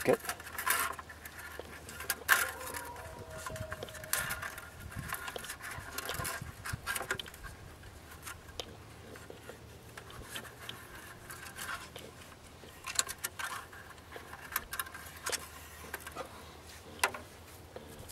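Wire being fastened to a plastic bucket's metal wire handle: scattered light clicks, rattles and scrapes of wire against the handle and rim, coming in small clusters with pauses between.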